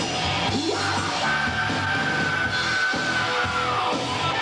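Live hard rock band playing loud, with a long high note held from about a second in that slides down near the end.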